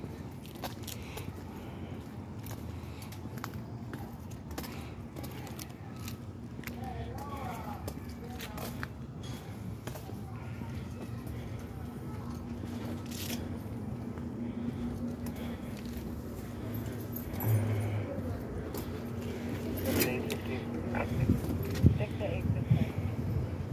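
Someone walking along a city sidewalk while filming: irregular small clicks and jingling from things carried or handled, with faint voices in the background. A steady low hum sets in about halfway through, and there are a few louder knocks near the end.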